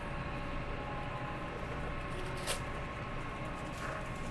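Steady grocery-store background hum with faint steady tones running through it, and one sharp click about two and a half seconds in.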